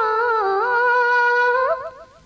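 Old Tamil film song: a single melody line with long held notes that slide down and back up, with quick ornamental turns, fading out near the end.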